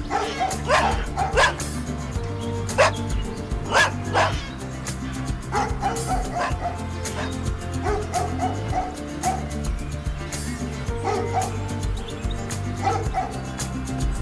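Background music with a dog yipping over it, several short yelps in the first five seconds and fainter, sparser ones later.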